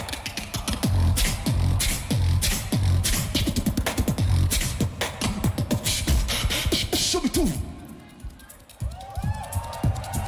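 A beatboxer's live solo routine: deep kick-drum sounds that fall in pitch, about two a second, under sharp hi-hat and snare clicks. Near the end the beat drops away and a held, higher whistle-like tone comes in.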